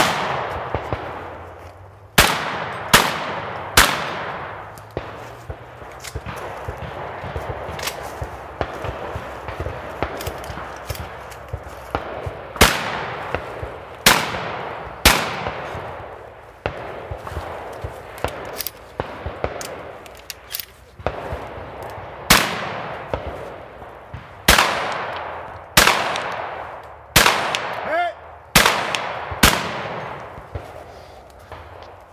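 Shotgun firing in quick strings of shots, about fifteen in all, spaced from under a second to a couple of seconds apart, each sharp report trailing off in echo. A lull of several seconds falls early on, and a thicker run of shots comes near the end. Quieter clicks fall between the shots.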